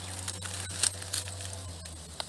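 Chili plant leaves and stems rustling, with scattered small crackles and clicks, as a hand reaches in among them to pick a chili. A steady low hum runs underneath.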